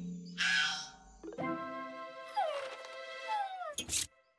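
Cartoon soundtrack music with a whining cry that falls in pitch twice in the second half.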